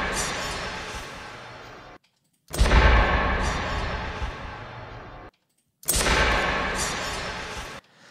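A designed impact sound effect, heard three times in a row: each is a sudden hit with a deep low end and a long decaying tail lasting about two seconds. The same sound is being compared with and without a room-correction EQ.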